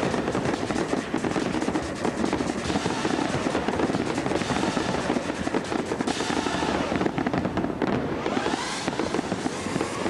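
Aerial fireworks bursting and crackling in a dense, continuous barrage, mixed with a loud music soundtrack, as heard on TV broadcast audio. Rising sweeps come in the upper range about six seconds in and again near the end.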